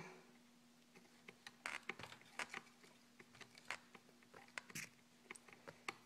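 Faint, irregular small clicks and scrapes of a screwdriver working the motor-mount screws out of an RC truck, over a faint steady hum.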